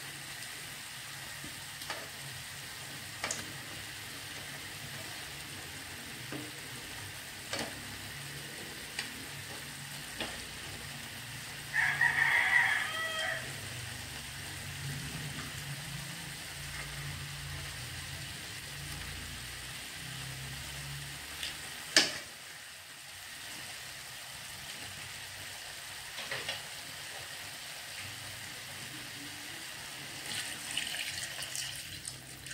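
Pork hocks sizzling steadily in an aluminium wok as tongs turn them, with scattered clicks of the tongs against the pan, the sharpest about two-thirds of the way through. A rooster crows once in the background, about twelve seconds in.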